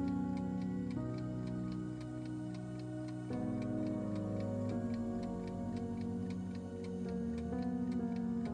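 Soft background music of held chords with a steady clock-like ticking over it: the countdown tick of a quiz timer.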